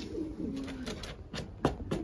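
Racing pigeons cooing, low and drawn-out, with a couple of sharp clicks about a second and a half in.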